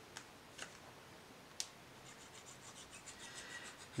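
Faint handling sounds: a few light clicks, then from about halfway a soft repeated scratching as the fine tip of a liquid glue bottle is drawn along a strip of cardstock.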